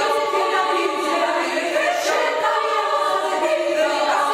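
Women's choir singing a Georgian song a cappella, several voices in parts holding long, sustained notes.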